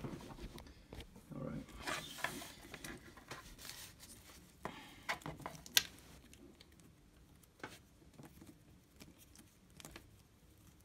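Faint rustling and scattered clicks of hands handling a bundle of flat black modular power-supply cables and untwisting the wire twist tie that binds them. The sharpest click comes a little before six seconds in.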